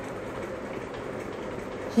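Steady background hum and hiss with a faint constant tone, room noise under the recording.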